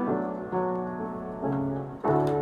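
Grand piano playing chords: new chords are struck about half a second in and again near the end, where a lower bass note comes in, and each rings and fades.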